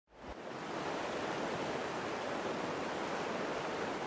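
Fast-flowing river water rushing, a steady noise that fades in over the first half second.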